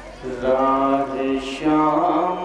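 A man chanting a noha, a Shia mourning lament, into a microphone. He comes in just after the start, holds long, steady notes, and moves to a new note near the end.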